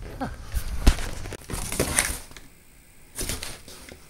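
Rustling and scattered clicks of things being handled, with a brief lull about two and a half seconds in before more rustling.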